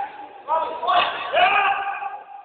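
Men's voices calling out during a futsal match, with one sharp thud of the ball being struck about a second in.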